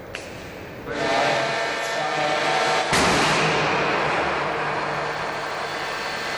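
Crash-test catapult sled line running a test: a loud machine noise with a steady hum in it starts about a second in, a sharp bang comes about three seconds in, and the noise then eases slowly.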